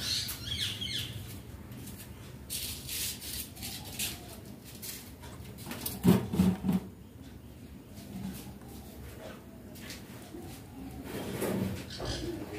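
Indian ringneck parakeet working at a dried popcorn cob with its beak: scattered small clicks, cracks and rustles, with a short high call at the start. A cluster of louder knocks about halfway through is the loudest part.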